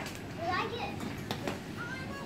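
Children's voices calling out in short rising cries, with a sharp click a little after a second in.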